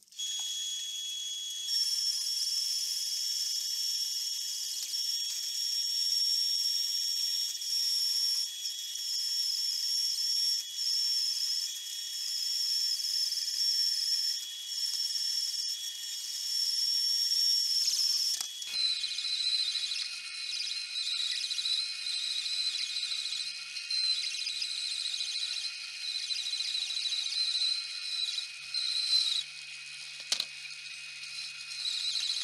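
Benchtop bandsaw cutting through a perspex (acrylic) sheet: a steady, high-pitched whine from the blade in the plastic that starts abruptly. About two-thirds of the way through, the whine drops slightly in pitch as the cut goes on.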